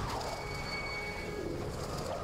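Sci-fi sound effects of a swirling swarm of tiny machines: a low rumble under swooping, falling tones, with a thin high whine through the middle.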